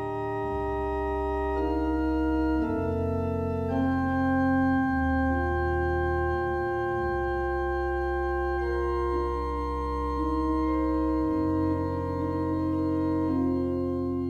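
Pipe organ playing slow sustained chords over a deep pedal bass, the chords changing every one to two seconds.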